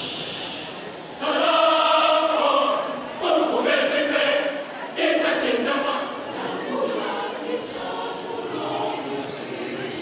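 Church choir singing together, the voices coming in strongly about a second in and easing to a softer level after about six seconds.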